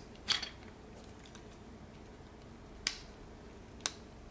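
Small plastic clicks from handling an action figure as a plastic axe accessory is pushed into its hand: three short, sharp clicks, one near the start, one about three seconds in and one near the end.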